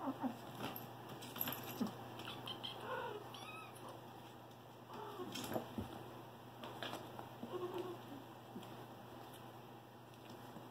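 Six-week-old kittens playing, with scattered taps and scrapes of small claws and paws on a leather cushion and mesh gate, and a few short, faint mews.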